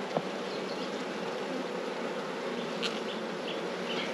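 Honeybees buzzing over an open hive, a steady hum from the colony on the exposed frames, with one light click near the start.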